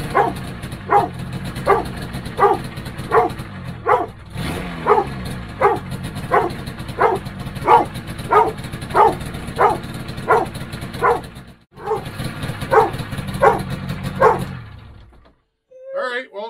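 A dog barking over and over, about one bark every 0.7 seconds, over the steady idle of a Polaris 600 Pro-X snowmobile's two-stroke twin. The engine is loaded up from flooding and idling on one cylinder. Both sounds cut off near the end.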